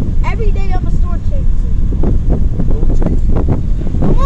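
Loud wind buffeting the phone's microphone through an open car window while driving, a steady low rumble with scattered thumps. A high-pitched voice calls out briefly near the start.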